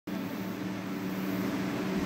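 Electric box fan running: a steady low hum over an even hiss of moving air.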